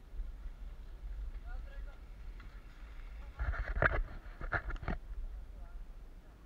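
Low, steady rumble of wind and trail noise on a mountain-bike-mounted camera riding a forest dirt trail. About three and a half seconds in comes a louder, rough burst of clatter lasting just over a second.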